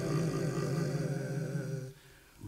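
Male a cappella gospel group holding a sung chord with vibrato over a deep bass voice, on the word "chariot". The chord breaks off just before the end.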